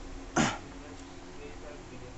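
A man clears his throat once, briefly, about half a second in.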